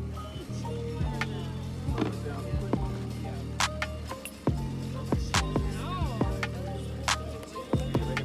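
A music track with deep, sustained bass notes and sharp percussive hits.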